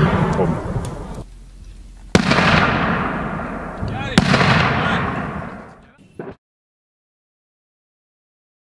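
Mortar fire: two loud blasts about two seconds apart, each rumbling and echoing away through the forest, with the fading tail of an earlier blast at the start. The sound cuts off abruptly a little after six seconds.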